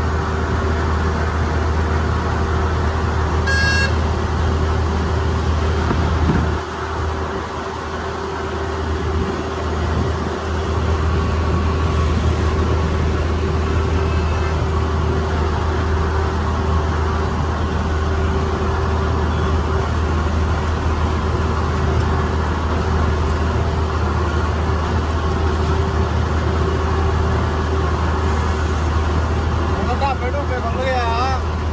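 Combine harvester's diesel engine running steadily under way, a deep drone with a steady hum above it, heard from the open cab. It eases slightly for a few seconds about seven seconds in. A brief high-pitched beep comes about three and a half seconds in.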